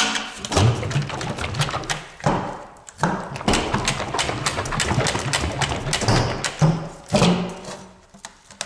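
Repeated knocks, taps and scraping of a metal paint tin as its lid is worked loose around the rim, with short ringing tones from the tin.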